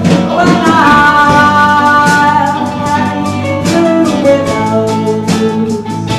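A live band playing a passage with no lyrics: electric guitar, mandolin and drum kit, with a lead melody line carried on long, sliding notes.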